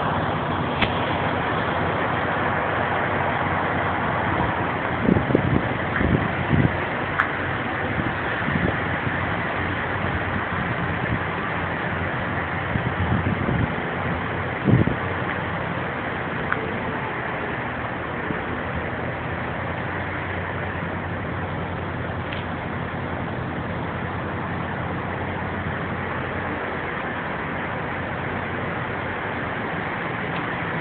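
Steady running noise of idling semi-truck diesel engines, with a few short low thumps in the first half.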